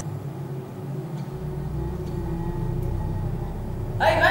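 Steady low rumble with a faint held hum, and a deeper rumble coming in about a second in.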